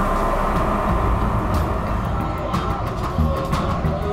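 Background music with a held tone over a dense low rumble.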